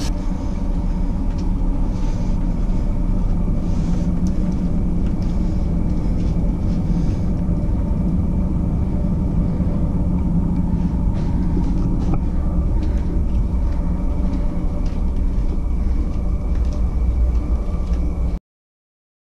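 Steady low rumble and hum of a cruise ship's machinery and ventilation heard inside the ship, with a few faint ticks.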